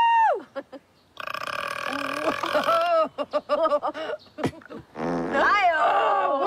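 A woman's long, loud burp starting about a second in and lasting nearly two seconds, right after she chugs melted ice cream. It is followed by voices laughing and exclaiming.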